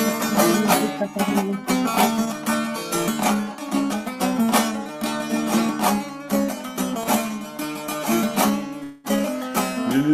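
Bağlama (saz) strummed in fast, dense strokes as the instrumental opening of a sung Alevi nefes. It breaks off briefly about a second before the end.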